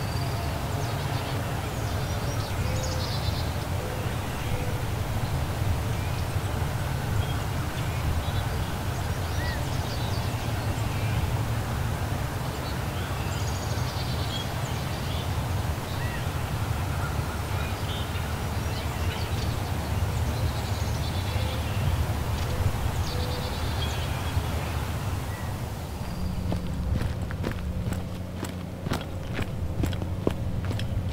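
Hilltop ambience: wild birds chirping here and there over a steady low rumble. Near the end the background changes and a run of sharp clicks sets in.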